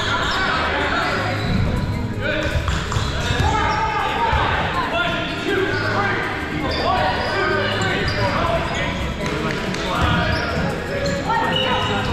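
Many players' voices shouting and calling out in a large, echoing gym, with foam dodgeballs bouncing and thudding on the wooden floor.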